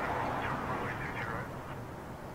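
Several short quacking calls, like a duck's, over the low steady rumble of a Boeing 787 jet rolling on the runway.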